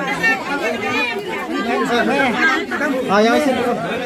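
Several people talking at once close by: overlapping conversation and chatter, with no single voice standing out.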